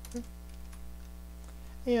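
A few clicks of computer keyboard keys being typed, with a steady electrical hum underneath.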